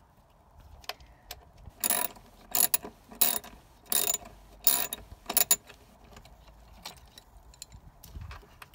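Socket ratchet wrench clicking in six short bursts, about two-thirds of a second apart, as a bolt by the wiper motor is turned.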